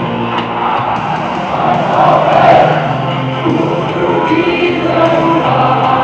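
Music with singing played loudly over a football stadium's PA system.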